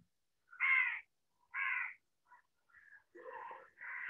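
Two short animal calls, each about half a second long and about a second apart, followed by fainter sounds near the end.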